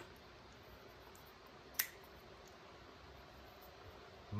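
A single sharp click a little under two seconds in, as the Fox Baby Core Mini liner-lock folding knife's blade is opened and locks up, with a faint tick just before; otherwise a quiet room.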